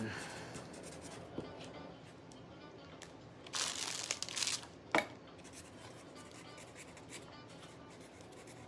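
Faint handling noise of hands rummaging through jewelry stock: light scattered clicks, a rustling crinkle for about a second midway, then one sharp click.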